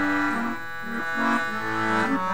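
Accordion playing a slow, mournful waltz: a melody moving note by note over held lower chords, with the reedy, many-overtone sound of the instrument.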